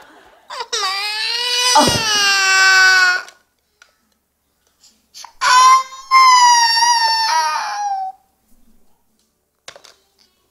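A toddler girl crying in two long, high-pitched wails, one about half a second in and one about five seconds in. She is crying in distress after her mother's pretend collapse.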